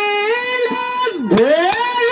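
A woman singing long held notes of a folk song through a microphone, the pitch bending slightly upward, with a break about a second in. A few drum and hand-cymbal strokes sound under the voice.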